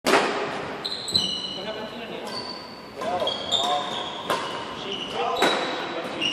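Badminton rally in a reverberant gym: sharp racket strikes on the shuttlecock about once a second, with court shoes squeaking on the hardwood floor between hits.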